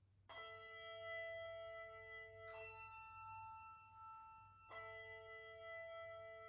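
Handbell choir ringing slow chords: three chords struck about two seconds apart, each bright and left to ring on until the next.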